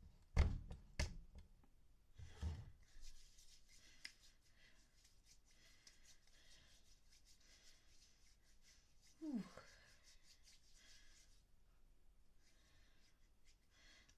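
Two sharp knocks near the start, then palms rubbing together with alcohol hand sanitizer: a faint, steady rustling hiss for several seconds. A short falling vocal sound comes about nine seconds in.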